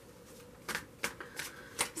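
A Vice Versa tarot deck being shuffled by hand: a few sharp snaps and slaps of the cards against each other, starting well under a second in.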